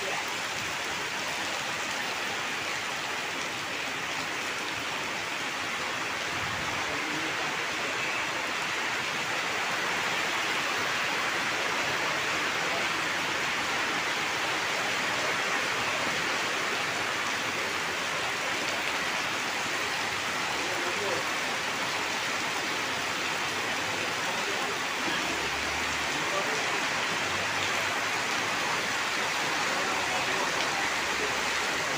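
Heavy rain pouring down steadily, running off tarpaulin canopies and splashing onto flooded ground.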